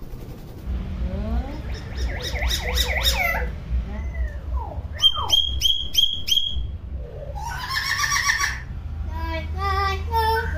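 Hill myna calling: rising and falling whistles, then a quick run of about five sharp, loud whistled notes near the middle, followed by throaty voice-like calls and short stepped notes toward the end.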